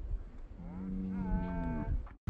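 A long drawn-out vocal call held at a steady low pitch for over a second, joined about halfway through by a higher held tone that first slides upward.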